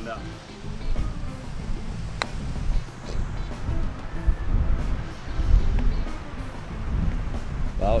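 A golf club striking the ball once, a single sharp click about two seconds in, over wind rumbling on the microphone and background music.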